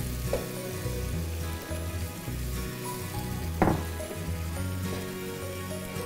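Mushrooms, onions and flour sizzling in a frying pan with a little water just added, stirred with a silicone spatula, as the gravy base starts to thicken. A brief knock of the spatula against the pan a little past halfway.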